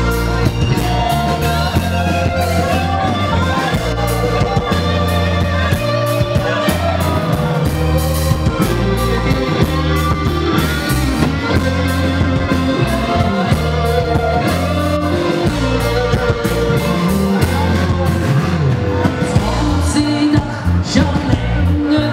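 A live rock band playing loud, with electric guitar over a steady beat and a man singing.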